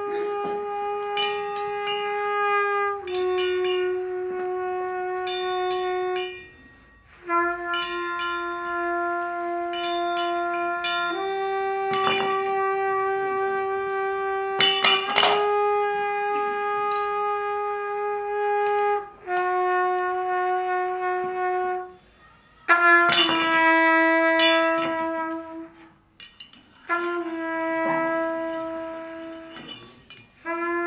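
Trumpet playing about eight long held notes in turn, each lasting three to four seconds, with short breaks between them and the pitch stepping slightly from note to note. Small cymbals struck with sticks ring out over the notes here and there, most thickly about halfway through and again a few seconds later.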